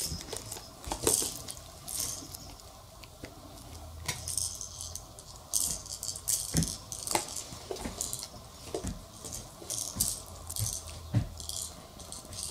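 A plastic baby toy rattling and clicking in irregular short bursts as it is handled and shaken.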